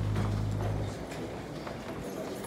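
A low steady hum cuts off about a second in, followed by scattered light knocks of footsteps and wooden chairs being shifted about on a stage.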